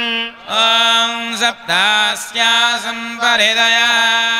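A man chanting Sanskrit mantras in long, held tones, phrase after phrase with short breaks between.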